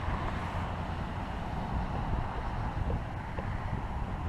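Steady rumble of traffic on a nearby highway, mixed with wind on the microphone.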